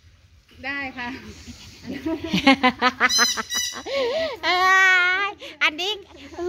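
Voices talking, then a long, wavering, drawn-out voice-like call just before the end.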